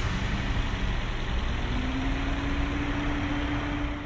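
Toyota VVT-i petrol engine idling under an open hood, a steady running noise with a faint whine that rises slightly in pitch from about halfway in.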